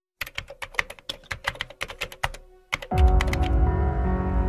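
A quick, irregular run of keyboard-typing clicks, a typing sound effect lasting about two and a half seconds, then music with a deep bass and held notes comes in near the end.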